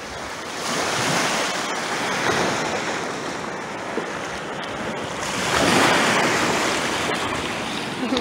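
Small waves washing up onto a sandy beach, surging loudest about five to six seconds in, with wind buffeting the microphone.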